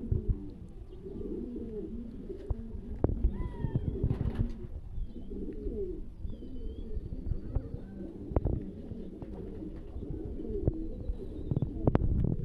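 Domestic pigeons cooing, a low continuous warbling throughout. A few sharp knocks and, around a third and half of the way through, short high chirps from small birds are heard over it.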